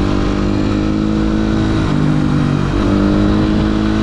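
Dirt bike engine running as the bike is ridden along a road, with a steady note. About two seconds in, the engine note dips for under a second, then picks up again.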